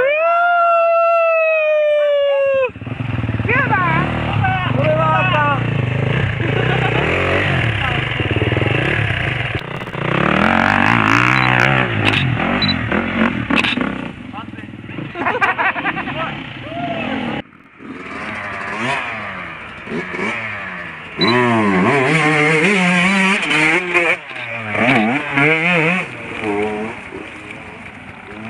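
Off-road motorcycle engines revving hard in repeated rising and falling throttle bursts as riders struggle up a steep hill climb. A steady held note runs for the first couple of seconds, and the revving drops out briefly about two-thirds of the way through.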